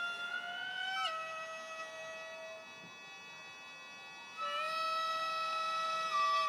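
Gagaku court music on a solo wind instrument: long held notes that slide down into the next pitch about a second in. The note fades out about halfway through, and after a short quiet gap a new note enters with an upward slide.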